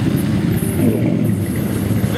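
Pickup truck engine running low and steady as the truck drives slowly past close by.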